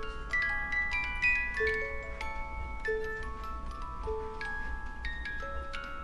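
Wind-up music box in a snow globe's wooden base playing a slow tune, its plucked metal comb notes ringing on into one another, about two or three notes a second.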